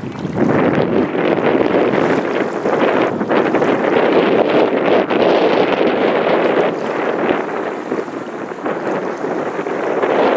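Steady rush of wind and water aboard a moving boat on a lake. It rises sharply at the start and then holds, easing slightly in the latter half.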